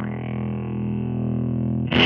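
Electric guitar played through an envelope filter pedal and a Supro valve amp: a chord is struck and left ringing, then a brighter strum near the end that cuts off abruptly.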